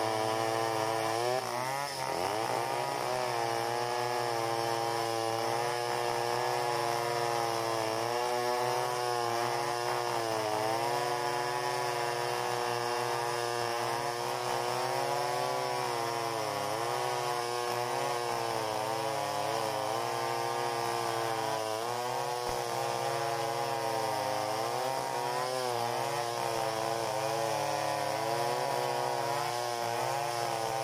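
Chainsaws running at high throttle, freehand ripping lengthwise through a hardwood log; the engine pitch wavers up and down as the cut loads the saws.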